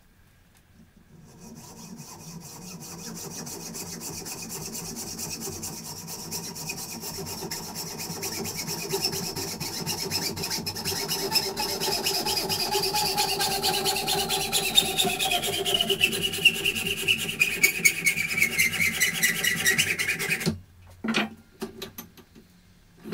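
Hacksaw cutting a metal tube clamped in a bench vise: continuous rasping strokes that grow louder, with a ringing tone from the tube sliding steadily lower in pitch. The sawing stops abruptly a little before the end, followed by a couple of sharp knocks.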